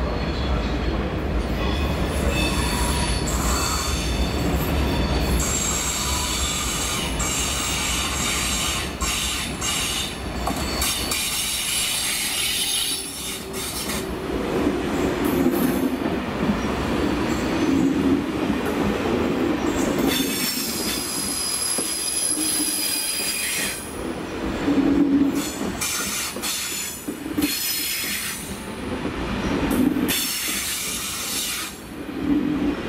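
Thalys high-speed trainset running slowly through curves and pointwork, its wheels squealing in high tones over a steady low rumble. The rumble falls away about halfway through, and more wheel squeal comes later on.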